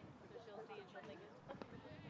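Near silence with faint, distant voices of players and onlookers, and a few soft clicks about a second and a half in.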